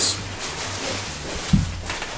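A person shifting and climbing out of a pipe cot, a fabric bunk slung on a tubular frame, with a low thump about one and a half seconds in, over a steady low hum.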